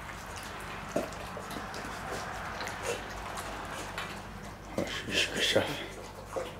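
Dogs eating wet food from bowls on the floor: licking and chewing, with a sharp click about a second in and a few louder smacks or clinks around five seconds.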